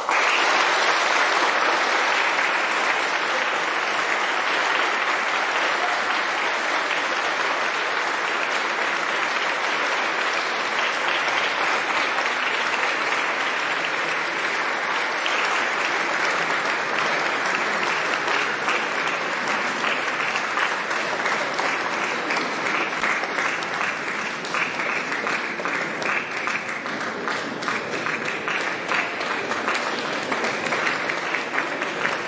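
Audience applause breaking out suddenly right after a choir performance and going on steadily, thinning a little near the end so that single claps stand out.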